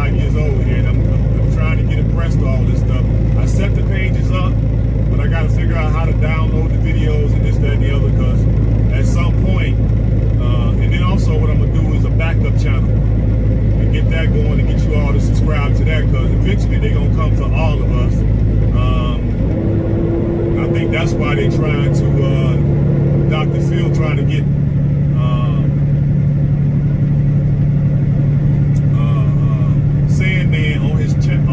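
Diesel engine of a tractor-trailer droning steadily inside the cab at highway speed. About two-thirds of the way through, the engine note changes and settles at a higher pitch.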